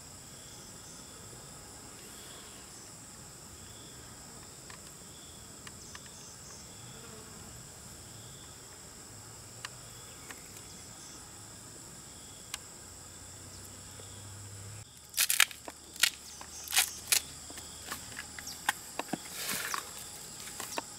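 Steady, high-pitched drone of insects in forest undergrowth. About fifteen seconds in, a run of irregular sharp knocks begins as a knife chops into fresh bamboo shoots.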